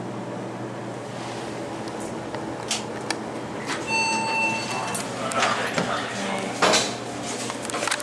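Delaware hydraulic elevator car arriving at its floor over a steady low hum: about four seconds in, a single electronic arrival beep lasting under a second, then the doors open with a few knocks and clatters, the loudest near the end.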